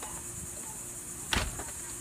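A steady, high-pitched chorus of insects, with one short, sharp knock about a second and a half in.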